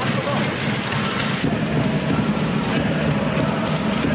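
Spectators applauding after a point is won.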